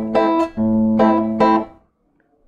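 Classical acoustic guitar strumming an A minor chord in a waltz rhythm, a bass note followed by chord strokes. The last chord rings and fades out near the end.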